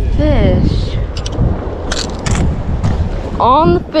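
Wind buffeting the microphone, a steady low rumble, with brief voices near the start and near the end and a few sharp clicks in between.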